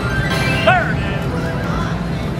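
WMS Vampire's Embrace slot machine playing its spin music while the reels turn, with a brief curving, whinny-like sound effect about two thirds of a second in.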